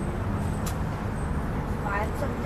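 Steady low rumble of road traffic, with a brief click about a third of the way in.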